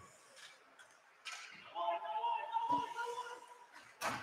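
Faint ice-hockey rink sounds during play: a low hiss that starts about a second in, and a steady held tone in the middle lasting about a second and a half.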